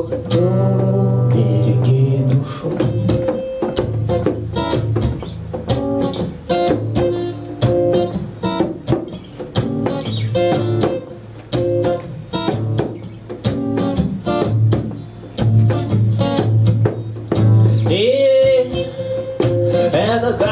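Acoustic guitar strummed in a choppy reggae rhythm during an instrumental break between sung lines. A sung note is held at the start, and singing comes back in near the end.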